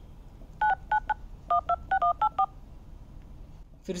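Smartphone dialer keypad playing touch-tone (DTMF) beeps as a phone number is keyed in: about ten short two-tone beeps in quick succession over roughly two seconds.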